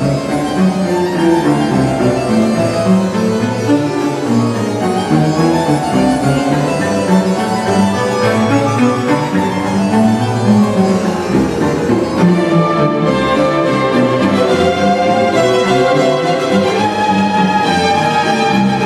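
Chamber string orchestra of violins and cellos playing a concerto movement, a dense continuous texture of many bowed lines, in a church.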